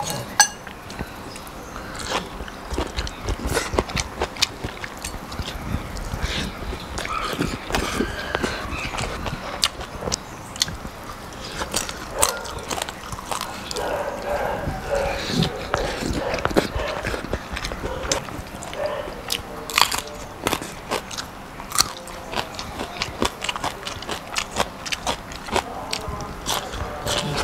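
A person eating close to the microphone: biting and chewing raw vegetables and rice, with many short, sharp crunches and clicks scattered throughout.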